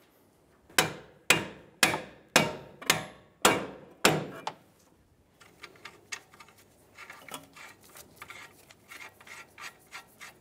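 Seven sharp metal strikes about half a second apart, each ringing briefly: the top strut-to-knuckle bolt being tapped through the strut bracket and steering knuckle. They are followed by light clicking and rattling of the nut and bolt being handled.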